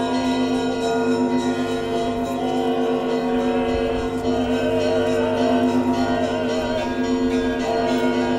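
Choir singing long held notes with vibrato, and church bells ringing over it.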